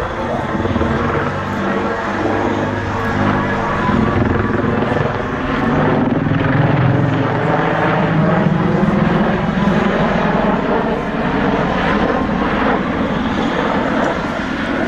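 AH-64D Apache attack helicopter flying a display manoeuvre: a loud, continuous drone of its main rotor and twin turboshaft engines, the low drone rising in pitch around the middle as the helicopter comes out of a steep dive and turns.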